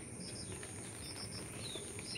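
Faint small-bird chirps: quick groups of two or three short high notes and one short falling note, over a steady high-pitched insect whine.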